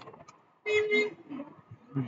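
A mouse click, then about half a second later a brief steady-pitched tone lasting under half a second.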